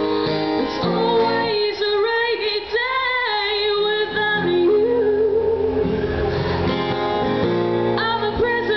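Live song: a woman singing with acoustic guitar accompaniment, her voice holding long, sliding notes.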